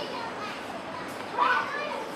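Children's voices chattering and calling, with one louder call about one and a half seconds in.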